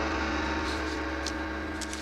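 Gong ringing on after a single strike: a full, sustained metallic tone with a deep low component, fading slowly.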